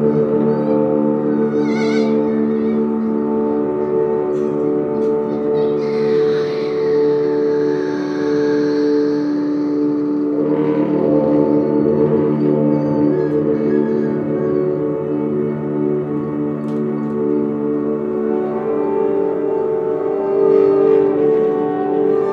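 Live electronic drone music: a dense stack of steady, sustained low and middle tones. A high whooshing sweep rises and falls in the middle, and brief warbling high sounds come near the start and the end.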